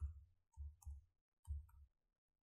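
Computer keyboard keys being pressed: about five faint, separate keystroke clicks at an uneven pace while text is typed.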